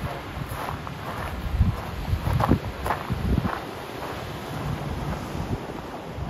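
Gusty wind buffeting the camera microphone, a low, irregular rumble with the strongest gusts near the middle.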